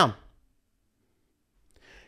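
A man's speech trails off, then a pause of near silence, then a short in-breath just before he speaks again near the end.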